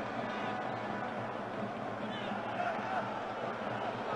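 Steady background hubbub of a football stadium match broadcast, with a few faint, distant shouts about the middle.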